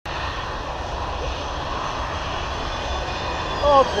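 Single-engine F-16 Fighting Falcon's jet engine on landing approach, still some way off: a steady rumbling roar, with a faint high whine coming in near the end as the jet closes in.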